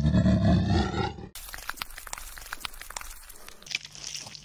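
A loud, low growling roar sound effect lasting just over a second and cutting off abruptly, followed by quieter scattered crackling clicks.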